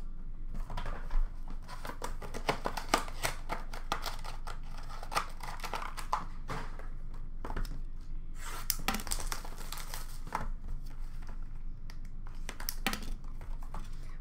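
Cardboard Upper Deck Clear Cut hockey card boxes handled and opened by hand: a busy run of clicks, scrapes and rustling card packaging being torn and crinkled, with two short lulls.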